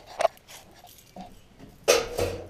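A pause in a man's talk: low background with a couple of small soft noises, then a short hissing rush near the end just before he speaks again.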